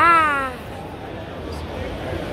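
A single short, high-pitched cry at the very start, falling in pitch over about half a second, heard over the babble of a crowd.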